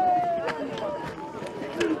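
Boot footsteps of honour-guard soldiers doubling back to their positions on paving after a "double time" command, with two sharp footfalls about half a second in and near the end. Crowd voices and a long drawn-out voice run underneath.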